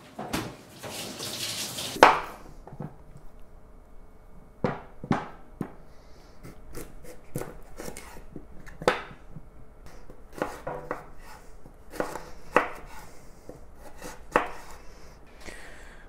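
Kitchen knife cutting a carrot into matchsticks on a bamboo cutting board: irregular, spaced strokes knocking on the wood. A rustle and a sharp knock come about two seconds in, before the cutting.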